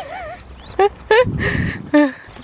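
Short, high-pitched vocal sounds: a wavering call at the start and a few brief rising yelps after it, with a short rush of noise in the middle.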